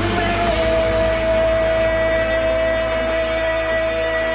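Hardcore dance music from a DJ mix, with no beat: one long held note over a sustained bass.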